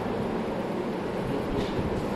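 Ceiling fans running: a steady hum with a faint low tone.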